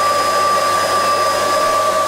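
Vacuum cleaner running steadily, with its hose sealed off at the end: a constant motor whine at two fixed pitches over rushing air.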